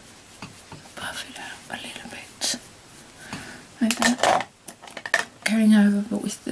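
Soft swishing and a few light taps of a makeup powder brush against skin and a compact, mixed with whispering. A spoken voice starts near the end.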